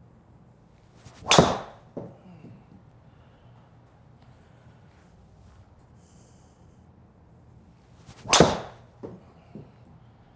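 Two full golf drives with a driver, about seven seconds apart: each a short swing whoosh ending in the sharp crack of the clubhead striking the ball. About half a second after each strike comes a softer knock as the ball hits the simulator's impact screen.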